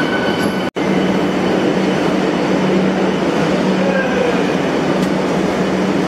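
Vande Bharat Express electric trainset at the platform: a steady low hum over rolling rumble, with the sound cutting out for an instant about a second in.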